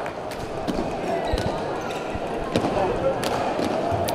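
A basketball bouncing a few times on a hardwood gym floor, with the general murmur of voices in a large gymnasium.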